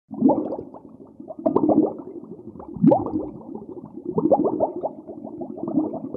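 Muffled underwater bubbling and gurgling water, rising in irregular surges about every second and a half.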